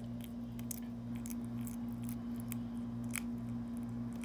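Bearded dragon chewing a live feeder insect: irregular, small crisp clicks, over a steady low hum.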